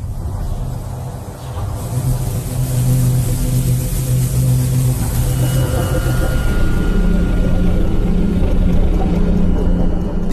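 Cinematic score and sound design: a deep rumbling drone with sustained low tones, swelling louder after about two seconds.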